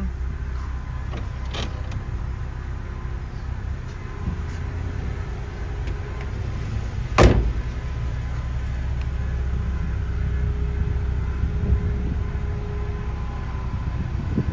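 Electric power-window motors whirring as the rear quarter windows of a 2006 MINI Cooper S Convertible lower, over a steady low rumble. A single sharp thump about seven seconds in is the loudest sound.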